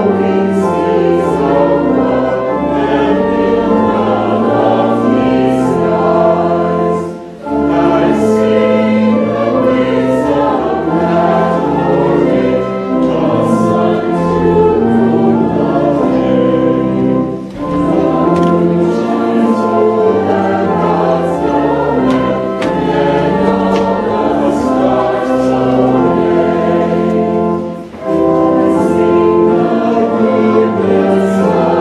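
A congregation singing a hymn with organ accompaniment, held notes in long phrases broken by short pauses about every ten seconds.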